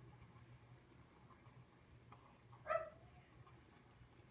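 Near silence with the faint, steady low hum of a thermal laminator feeding a pouch through its heated rollers. About two and a half seconds in there is a short, faint whine from a pet.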